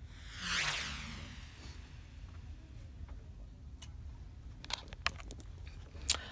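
Low-level room noise with a low rumble, a soft swish about half a second in and a few faint scattered clicks.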